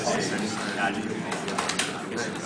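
Several people talking at once in a lecture hall, an indistinct, steady murmur of overlapping voices.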